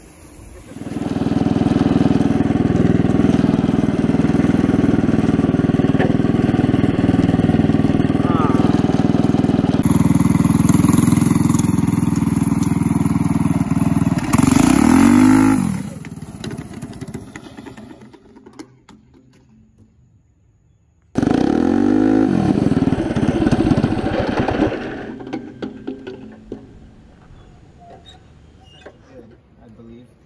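Go-kart engine running hard, then its note drops away in a falling sweep. After a short quiet gap the engine is loud again and falls away once more. The kart is running on metal buckets slipped over its rear tires.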